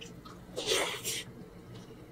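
A person eating a handful of mansaf rice by hand, close to the microphone: a short, loud breathy hiss from the mouth or nose comes about half a second in and lasts under a second. A few faint wet clicks of chewing sit around it.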